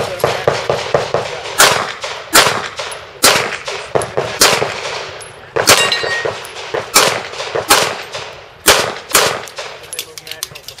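Handgun shots fired singly, about ten at irregular gaps of half a second to a second and a half, each a sharp crack with a short echo. Lighter metallic clangs of steel targets being hit come between the shots.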